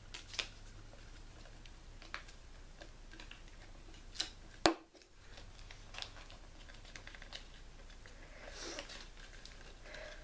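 Quiet handling of paper and a glue stick while a paper corner bookmark is folded and glued: scattered light clicks and taps, the sharpest about halfway through, and a soft paper rustle near the end.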